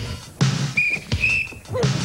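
Backing music with a steady drum beat, and two short, high, steady whistle-like tones about a second in.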